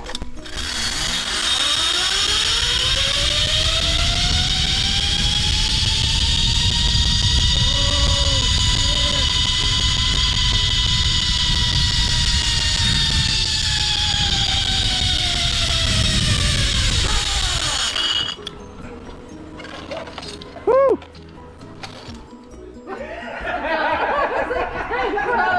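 Zipline trolley pulleys running along a steel cable: a whine that rises in pitch as the rider picks up speed and falls again as the trolley slows, over wind rumbling on the microphone. It cuts off suddenly about 18 seconds in.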